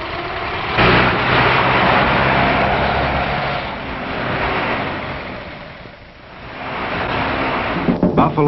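Racing car engines running at speed, loud from about a second in, fading to a low point around six seconds, then swelling again as more cars come by.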